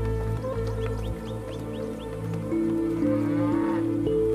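Background music of long held notes, with a cow mooing.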